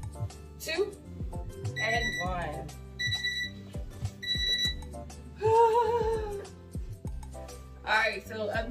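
A workout interval timer giving three short electronic beeps about a second apart as it counts down to the end of a 40-second set, over background music. About a second later comes a longer, lower, wavering sound.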